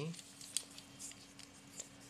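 Light handling noise of small plastic parts, a door/window entry alarm body and its magnet piece, being turned in the hands: a few faint clicks, about half a second in, about a second in and near the end.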